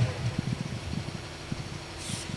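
A quiet lull between spoken lines: faint low rumbling and soft irregular thumps of background noise picked up by the open stage microphones.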